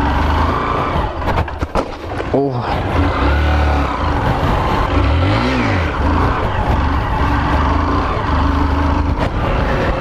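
Honda Fan 125 single-cylinder four-stroke motorcycle engine held at steady revs with the throttle blipped up and back down a couple of times, while the bike is ridden in a tight wheelie circle.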